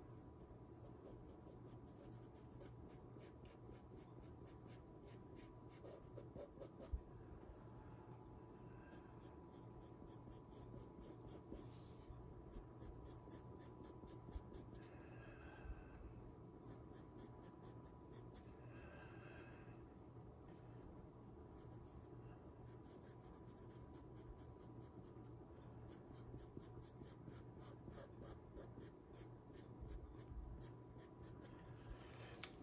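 Faint scratching of a pastel pencil on Pastelmat pastel paper, in stretches of quick short strokes broken by brief pauses, with a faint steady tone underneath.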